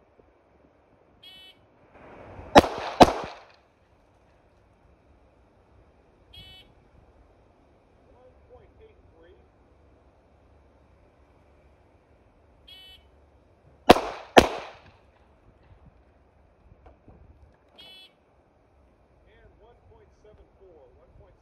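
Two controlled pairs of gunshots. Each pair starts with a short shot-timer beep, followed about a second later by two quick shots half a second apart; the second pair comes about eleven seconds after the first. Further short electronic beeps sound between the pairs.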